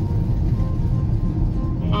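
Steady low rumble of road and engine noise inside a moving vehicle's cab, with background music playing over it.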